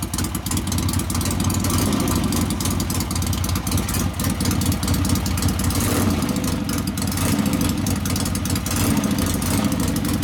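1961 Harley-Davidson XLCH Sportster's Ironhead V-twin engine idling steadily, a quick run of exhaust pulses, freshly rebuilt and just put back together.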